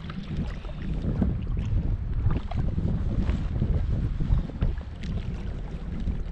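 Wind buffeting the microphone in a gusty low rumble, over water lapping with small scattered splashes around the boat.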